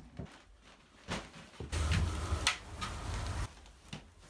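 Handling noise from a plastic replica helmet being turned and moved on a plastic-covered table: a knock about a second in, then about two seconds of rustling and scraping with low rumbling bumps and a sharp click in the middle.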